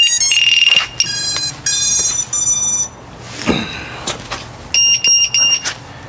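Electronic beeps from FPV drone gear as the flight gets under way: a held tone, then a run of short beeps at changing pitches, a brief whoosh falling in pitch about halfway, and four quick beeps of the same pitch near the end.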